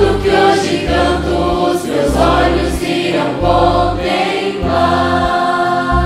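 Mixed youth choir singing a gospel hymn over an instrumental backing, with deep bass notes changing about once a second.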